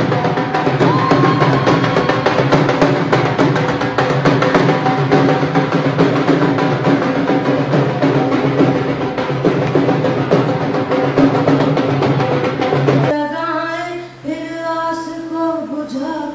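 Dance music with a steady drum beat. About thirteen seconds in it cuts off abruptly and a woman's solo singing voice takes over.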